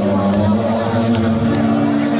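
Live rock band playing, with held chords from the guitars and bass; the chord steps up about one and a half seconds in.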